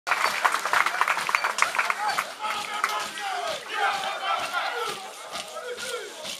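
A Kanak dance troupe shouting and calling out in rising and falling cries over a steady percussive beat of about three strikes a second, the sound of a traditional group dance. The first two seconds are the loudest, with many sharp clicks.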